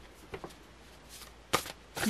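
Tarot cards shuffled by hand: a few short, soft slides and flicks of the deck, the loudest about three-quarters of the way through.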